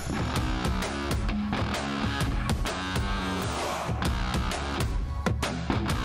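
Background rock music with electric guitar and drums keeping a steady beat.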